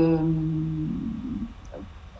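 A man's drawn-out hesitation "euh", held on one steady pitch for about a second, then trailing off into a low murmur and room quiet.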